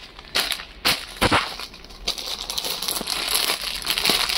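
Clear plastic saree packets crinkling as hands shift a stack of packed sarees: a few sharp crackles in the first second or so, then a steadier rustle.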